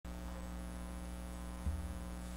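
Steady electrical mains hum with a stack of buzzing overtones, picked up by the recording setup, with a soft low thump about a second and a half in.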